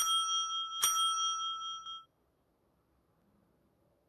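A small bell or chime struck twice, under a second apart, each strike ringing on with several clear high tones that fade out about two seconds in.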